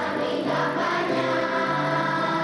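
Children's choir singing a song, with sustained notes that move from pitch to pitch.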